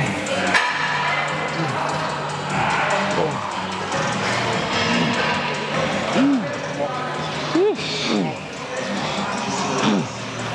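Background music with vocals and a steady bass line.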